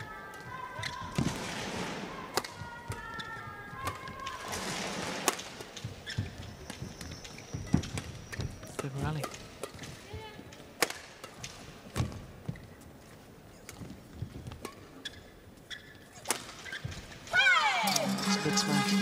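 Badminton rally: a run of sharp, irregular shuttlecock strikes off the rackets, with voices calling out in the first few seconds. Just before the end, a rising whoosh leads into music.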